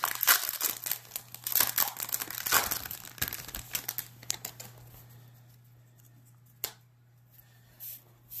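Crinkling and tearing of a baseball card pack's wrapper as it is torn open, busy for the first four seconds or so and then dying away. A single light tick comes near the end.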